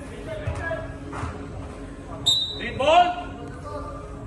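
Indoor five-a-side football play: the ball is kicked a couple of times with dull knocks, there is a short sharp high squeak a little past two seconds, and a player gives a brief rising shout near the end, all in a hall's echo.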